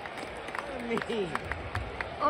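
Spectators in stadium stands talking, with a few scattered hand claps.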